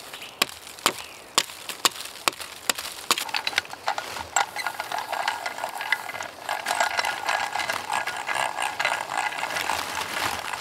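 Hand drill boring into a birch trunk: sharp ratcheting clicks about twice a second at first, then from about three seconds in a continuous rasping grind as the twist bit cuts into the wood.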